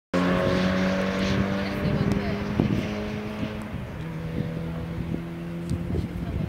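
Car engines running at steady revs, an even tone that drops a little in pitch about two seconds in.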